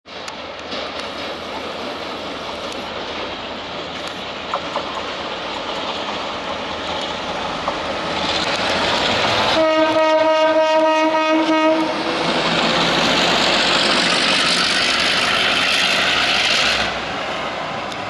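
An EMD G12 diesel-electric locomotive running light, with its two-stroke diesel engine growing louder as it approaches. About halfway through it sounds one steady horn note lasting about two seconds. The engine is loudest as it passes close by, then drops off near the end.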